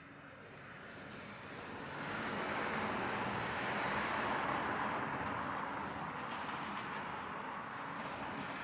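A vehicle going past: a broad rushing noise that builds to a peak about four seconds in and slowly fades.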